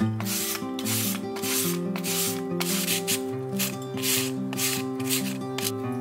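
A carrot being shredded on a hand grater: a run of quick rasping strokes, about two a second, with the shreds falling into a ceramic bowl.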